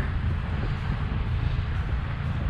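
Wind rushing over the microphone of a camera on a moving bicycle: a steady low rumble with a hiss above it.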